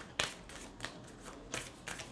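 A deck of large cards being shuffled by hand, giving several short snaps as the cards slap together, the sharpest just after the start.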